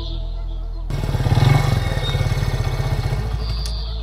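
Motorcycle engine running for about two seconds, rising to its loudest early on and then stopping shortly before the end, over steady background music.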